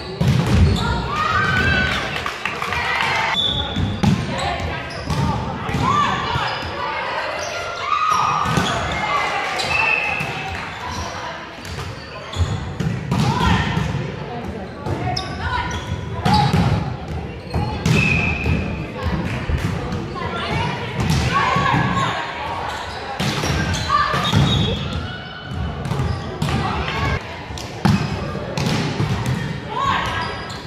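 Indoor volleyball play in a gymnasium: repeated sharp smacks of the ball being passed, hit and bouncing on the hardwood floor, mixed with players' indistinct calls and shouts, echoing in the large hall.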